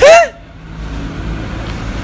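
A short, high-pitched excited cry from a person's voice, rising and falling in pitch, at the very start, followed by a steady low background rumble.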